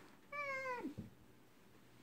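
A single short meow-like call, about half a second long and quiet, holding its pitch and then dropping at the end.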